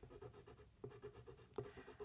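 Coloured pencil scratching on toothy mixed media paper in quick, repeated short strokes, faint, as green sections of a drawing are gone over with light shading.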